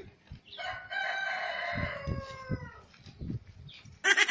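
A rooster crowing once: one long call of about two seconds that dips in pitch at its end.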